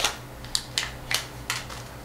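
Foil seal being peeled off the top of a metal can of ground coffee: about half a dozen sharp crinkling crackles.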